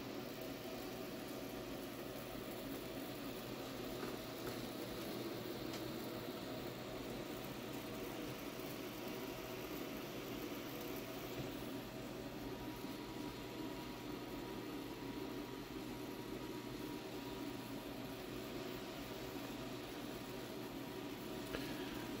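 Faint, steady sizzling hiss of a 4.5 MHz solid-state Tesla coil's plasma flame burning from its breakout point, with the coil running at about 47 V and 277 W, over a low steady hum.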